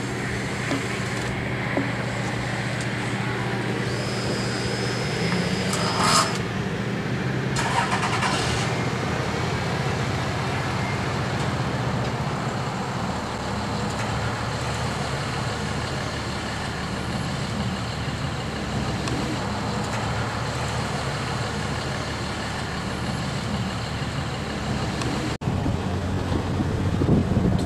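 Steady motor-vehicle running noise, with a low engine hum that fades after about nine seconds and two brief sharper sounds around six and eight seconds in.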